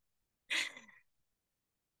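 A person's short breathy sigh with a falling pitch, about half a second in.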